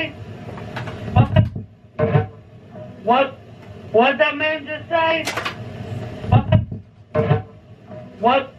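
Live experimental electronic music: chopped, voice-like syllables with sliding pitch repeating about once a second from a keyboard and electronics rig, with a couple of deep thuds underneath.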